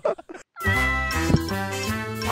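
The last of the laughter breaks off, and about half a second in an upbeat intro jingle starts suddenly, with a cat's meow sound effect near its start.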